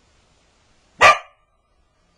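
Border collie giving one short, loud bark about a second in.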